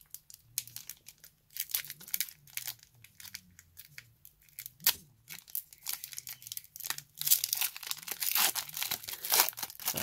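Foil wrapper of a Pokémon TCG booster pack being torn open by hand, crinkling and tearing in short, irregular crackles that come thicker and louder over the last few seconds.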